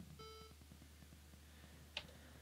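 Near silence, broken by one faint, short computer alert beep about a fifth of a second in, the system's error sound for a machine-exception crash alert. A single mouse click near the end.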